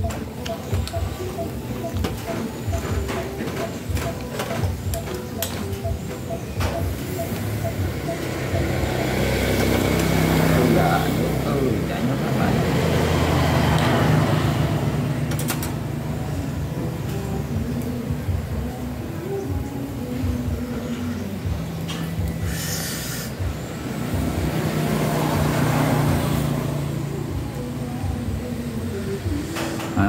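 Passing road traffic: heavy vehicle engines swell and fade twice, loudest about ten to fourteen seconds in and again about twenty-four to twenty-seven seconds in, with small scattered clicks in the first few seconds.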